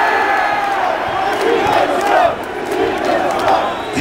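A large concert crowd shouting and cheering, many voices at once and loud throughout.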